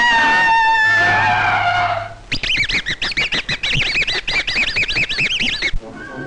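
Cartoon soundtrack music with held notes and a falling slide for about two seconds. Then a rapid, high, warbling squeaky chirping, like a bird-whistle sound effect, runs for about three seconds before cutting off suddenly.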